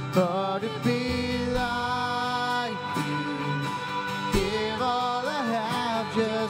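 Live worship band playing a song: voices singing over strummed acoustic and electric guitars, with drum hits.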